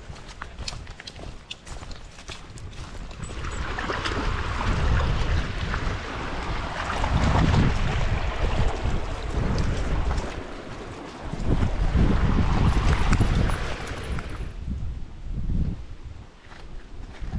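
Wind buffeting an action camera's microphone in gusts over the rush of a shallow river running over rocks. It swells from about four seconds in and dies away near the end, with faint scattered clicks before it.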